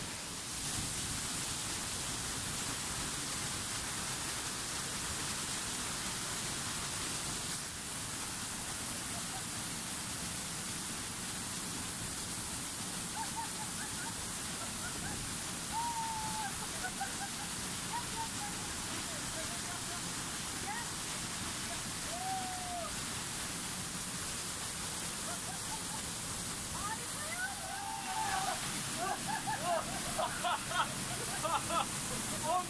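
Waterfall and river rapids rushing steadily. From about halfway through, people close to the falling water laugh and call out now and then, more often near the end.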